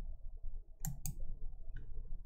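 Two sharp clicks of a computer mouse about a fifth of a second apart near the middle, then a fainter click near the end, over a low steady hum.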